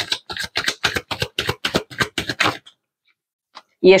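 Tarot cards being shuffled by hand: a quick run of crisp clicks, about eight a second, that stops after about two and a half seconds.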